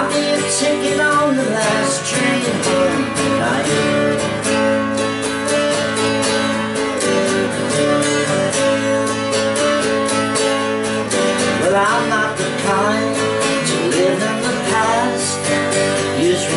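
Twelve-string acoustic guitar strummed in steady chords.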